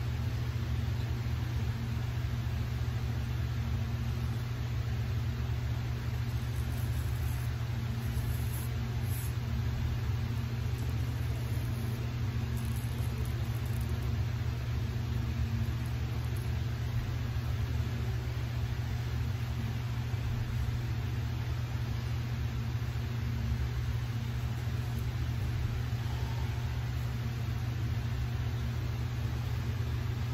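Steady low mechanical hum with a light hiss above it, unchanging throughout.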